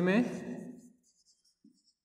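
Marker pen writing on a whiteboard: faint, short strokes in the second half, after a spoken word trails off.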